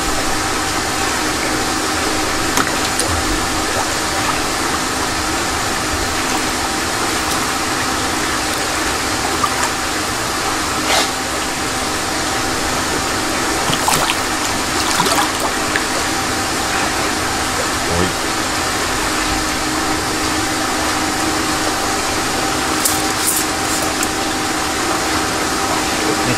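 Water sloshing and splashing as a koi is handled and turned on its side in a shallow tub, with sharper splashes about 11 seconds in, around 14 to 15 seconds and again near the end, over a loud, steady machine hum.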